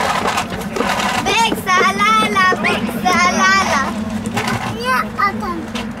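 Players' voices shouting and calling out across the pitch in short, high-pitched yells, several of them through most of the stretch, over a steady low hum.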